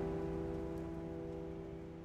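Background music: a sustained piano chord, struck just before, slowly fading away.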